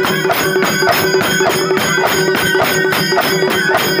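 Traditional folk music: fast, steady drumbeats under a held, unchanging pipe note.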